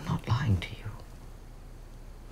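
Speech only: a woman says two words ("to you") in a hushed voice in the first second, over a faint steady low hum.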